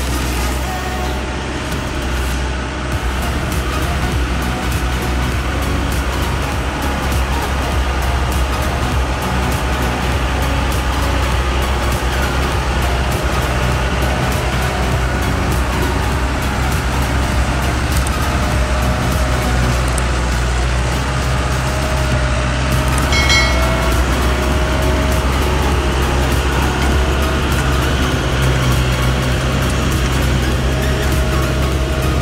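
Dongfeng truck's diesel engine running steadily as the truck crawls along a rutted dirt track and passes close by, growing slightly louder as it nears. Background music plays over it.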